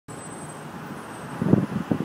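Steady street traffic noise, with a few irregular low rumbles in the second half.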